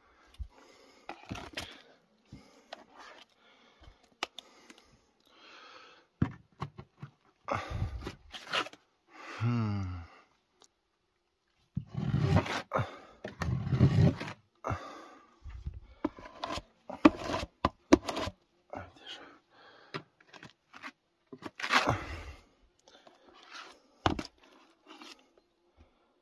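Metal putty knife scraping and dabbing gypsum plaster onto a plaster wall, in short irregular strokes with scattered knocks and a brief voice-like sound about ten seconds in.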